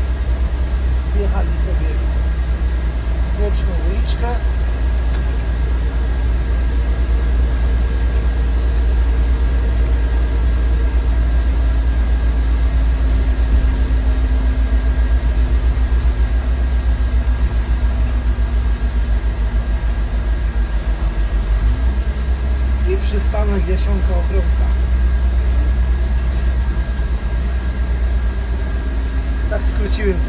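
Autosan Sancity M12LF city bus driving, its engine and running gear heard from the driver's cab as a steady low rumble, with the engine note rising and falling gently as the bus speeds up and slows. Tyre noise from the wet road runs under it.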